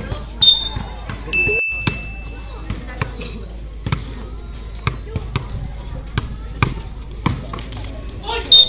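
A basketball being dribbled on an outdoor concrete court: a run of sharp, irregularly spaced bounces as the player handles the ball and drives to the basket.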